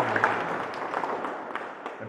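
A small group of people applauding, the clapping dying away near the end.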